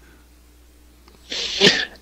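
A short, breathy burst of a man's breath, about a second and a half in, after a near-quiet pause.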